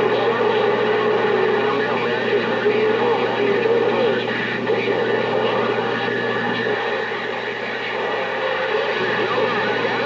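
CB radio receiver audio on a busy channel: several garbled, overlapping voices and wavering carrier tones over static, squeezed into a narrow band. A steady hum underneath stops about two-thirds of the way through.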